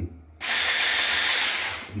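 Electric stick blender with a perforated masher attachment switched on briefly in the air, a steady hissing whir that starts suddenly about half a second in and winds down over a moment about a second and a half later.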